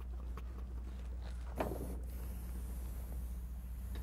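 A steady low electrical hum, with a few faint soft ticks and one short soft sound about a second and a half in.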